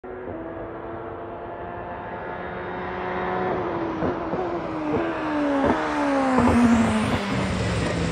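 Toyota GR Supra GT500 race car's turbocharged 2.0-litre four-cylinder engine, first held steady and growing louder as it approaches. It then drops in pitch as the car brakes for the corner, through a run of downshifts, each marked by a short sharp crack.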